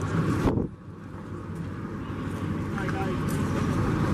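Murmur of a gathered crowd talking outdoors, over a low steady hum. A louder sound cuts off abruptly about half a second in, and the chatter slowly grows louder again.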